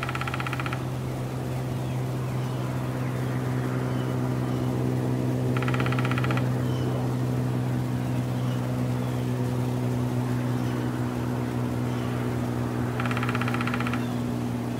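A woodpecker drumming: three rapid drum rolls, each under a second long, at the start, about six seconds in and near the end, with short high calls between them. Under it runs a steady low mechanical drone.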